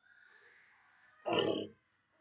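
A child's single short, harsh vocal sound about a second and a half in, preceded by a faint breathy hiss.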